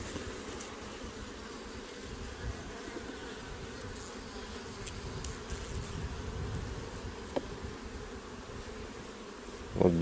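A colony of Carniolan honeybees humming steadily on the open frames of a hive's honey super.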